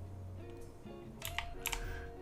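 Computer keyboard and mouse clicks, a short run of quick clicks in the second half, over soft background music.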